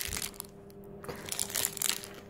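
Crinkly foil blind-bag wrapper being handled and scrunched, giving a few scattered crackles and crunches.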